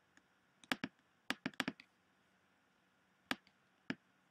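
Sharp computer input clicks, about nine in all, coming in quick pairs and a short cluster during the first two seconds, then two single clicks near the end, over faint room hiss.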